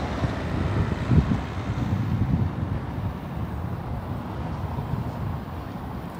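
Street traffic noise: a car driving past across the cobbled square, with wind rumbling on the microphone.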